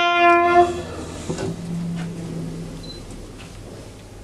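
Trumpet holding the last long note of a ceremonial call, sounded during a minute's silence. The note stops less than a second in and rings briefly in the room, which then goes quiet apart from faint shuffling.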